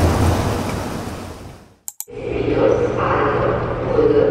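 A rushing whoosh fades away over the first two seconds, broken off by a short gap with a couple of clicks. Then comes the steady hum and hubbub of an underground train station concourse.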